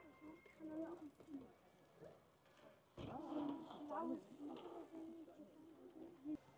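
Faint voices talking at a distance, in two stretches near the start and around the middle, with a low bump about halfway through.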